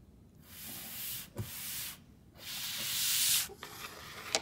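Audio-drama Foley of a stack of paper pages being rustled and slid: two long swishes, the second building up, with a light tap between them.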